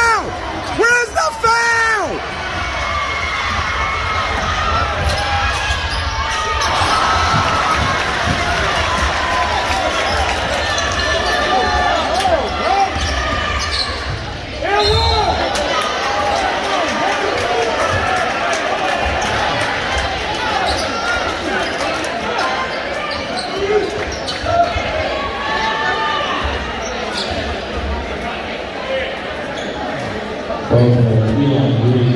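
A basketball bouncing on a hardwood gym floor during play, with players' and fans' voices over a steady crowd murmur in a large, echoing gym.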